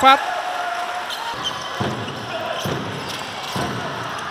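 A basketball bouncing a few times on a hardwood court, the bounces unevenly spaced, over the steady murmur of the arena crowd.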